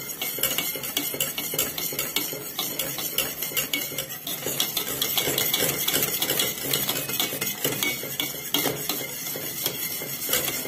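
A utensil stirring a liquid mixture briskly in a stainless steel pot, scraping and clicking against the metal in quick, continuous strokes.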